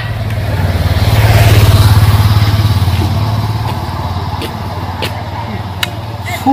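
Motorcycle engine running on the road, growing louder to a peak about a second and a half in and then fading away as it passes and recedes.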